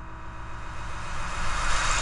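A rising noise swell, a cinematic riser sound effect, growing steadily louder and brighter over a low rumble.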